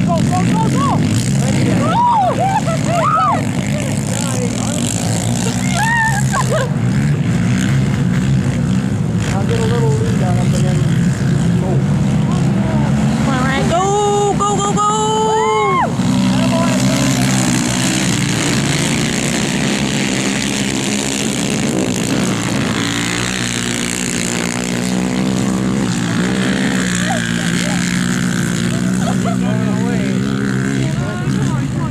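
Several racing quad ATV engines running and revving together as the pack laps the ice track, with spectators' voices calling out over them at times.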